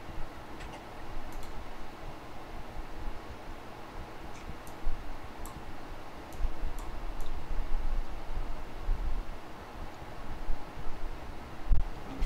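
Low background noise from open microphones on a video call: a steady low rumble and hiss with a few faint, scattered clicks.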